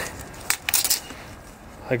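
Metal tape measure being handled and its blade laid across a cut board: a few light metallic clicks and clinks about half a second to a second in.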